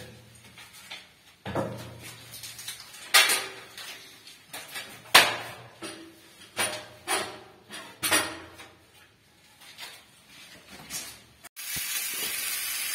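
Wooden planks knocked, scraped and set down on concrete: a dozen or so irregular knocks and bumps in a small echoing concrete room. Just before the end, sausages sizzle in a pan.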